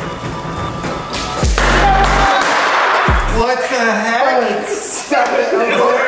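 Excited wordless shouts and screams from a small group at a surprise reveal, over music with a deep, downward-sliding bass hit about a second and a half in and a shorter one about three seconds in.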